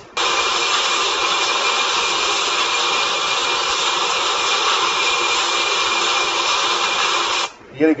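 Steady whirring, hiss-like machine noise with a faint high whine, from factory footage of a wire-guided automated guided vehicle played back on a computer. It drops out for a moment at the very start and stops about half a second before the end, when a man starts talking.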